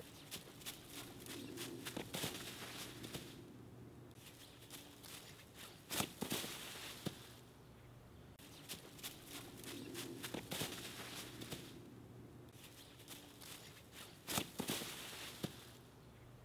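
Faint footsteps and rustling in dry fallen leaves, with a louder crunch about six seconds in and again near the end. The same pattern comes twice, with a short lull between.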